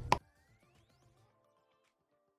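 A single sharp click just after the start, then near silence with a few very faint sustained musical tones.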